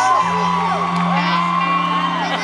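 Live concert sound: a held keyboard chord sustains and shifts to a new chord about a quarter second in, while the audience's high whoops and screams rise and fall over it.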